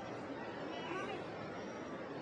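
Indistinct background chatter of people on a street over a steady noise floor, with one voice slightly more distinct about a second in.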